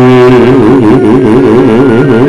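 A loud, buzzy tone warbling rapidly up and down in pitch, with several stacked tones moving together.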